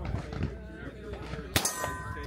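A single shot from a 9mm revolver about one and a half seconds in, followed at once by the bright ring of a steel target being hit, fading over about half a second.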